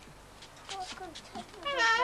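A domestic cat meowing once near the end, a single pitched call that rises and falls.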